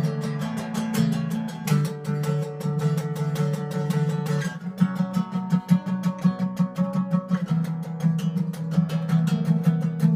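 Solo acoustic guitar playing the instrumental opening of a song: quick strums in a steady rhythm over ringing chords.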